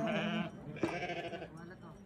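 Sheep bleating twice: a wavering call in the first half-second, then a second, longer one from just under a second in.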